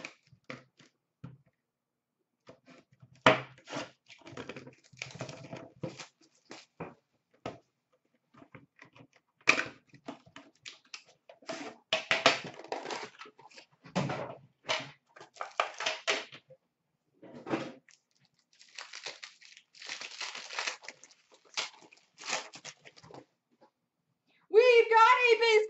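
A sealed trading-card box being opened by hand: clear plastic wrapping torn and crinkled, and cardboard and cards handled, in irregular bursts of rustling with sharp clicks and short pauses.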